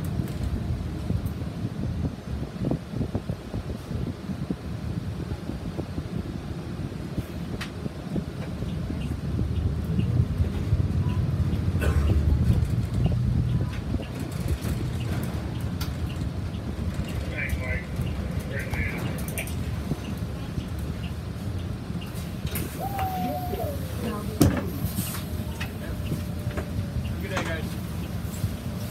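City transit bus heard from inside: steady low engine and road rumble as it drives, swelling for a few seconds mid-way. Near the end a short falling squeal is followed by a sharp clunk as the bus slows.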